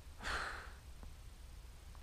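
A man's single short breathy exhale, a sigh, about a quarter of a second in, over a faint low rumble.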